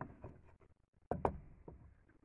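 Boards being handled as the top board of a press is lifted off a flattened PVC strip: light rubbing and scraping with two sharp, quick knocks about a second in.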